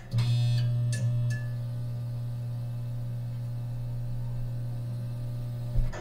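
Electronic intro sound effect: a steady low hum. It opens with a short burst of high electronic chirps and has a brief hit near the end.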